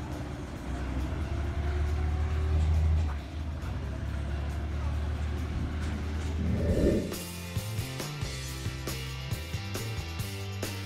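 Small narrow-gauge diesel locomotive engine running with a low, steady rumble as it pulls away, louder for a moment about two to three seconds in. About seven seconds in there is a brief burst of noise, and then background music with a steady beat takes over.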